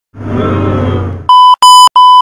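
About a second of hissy noise over a low electric hum, then three short, loud electronic beeps of the same pitch in quick succession, like a test tone.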